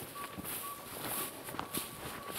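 Faint rustling and shuffling steps of a person handling cloth bags clipped to a line, with a thin high steady tone that breaks off and resumes several times.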